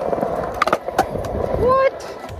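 Skateboard wheels rolling over concrete with a steady gritty rumble, broken by sharp clacks of the board about two-thirds of a second and one second in. A short voice calls out near the end.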